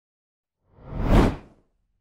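A whoosh transition sound effect: one rushing noise that swells and fades over about a second, starting a little past halfway.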